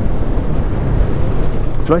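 Wind rushing over the microphone on a motorcycle cruising at a steady speed, with the Kawasaki Z650's parallel-twin engine running underneath. A voice starts right at the end.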